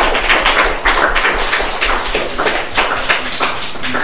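Audience applause, many hands clapping; it dies away near the end.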